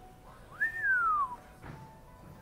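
A person whistling a single note that jumps up and then slides smoothly down in pitch, lasting under a second.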